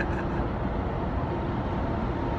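Steady road and engine noise of a car being driven, heard from inside the cabin.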